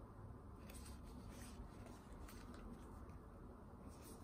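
Faint rustling of the thick, collaged paper pages of a glue book being turned by hand, a few soft brushes over a low room hum.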